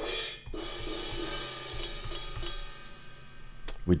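Software drum kit played from the computer keyboard: a run of cymbal and hi-hat hits ringing out over light drum thumps, fading away near the end.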